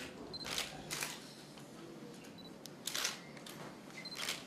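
Press photographers' camera shutters clicking in short separate bursts, a couple in the first second and a quick cluster about three seconds in, with short high beeps before some of the clicks.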